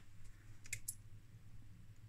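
A few short, light clicks close together near the middle, over a faint low hum.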